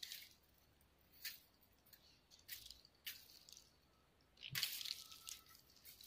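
Faint, scattered crunches of footsteps in dry leaf litter and grass, about one a second, with a longer, louder rustle near the end.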